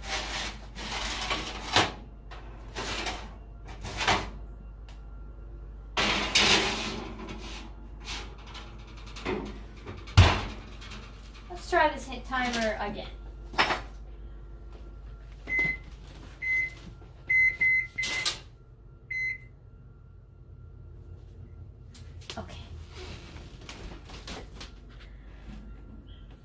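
Kitchen clatter of a metal baking sheet and utensils being handled, with knocks and one heavy thump about ten seconds in. About fifteen seconds in, a run of short high electronic beeps from an appliance keypad as a baking timer is set.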